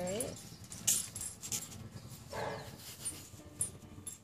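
Small Chihuahua-type dog being rubbed on the belly while lying on its back: scattered scratchy rustles and small clicks from hands on fur, and one short dog vocalization about two and a half seconds in.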